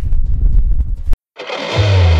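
Wind buffeting the microphone with a heavy low rumble, cut off abruptly about a second in. After a brief dead silence, rock music with electric guitar and bass swells in and plays loudly.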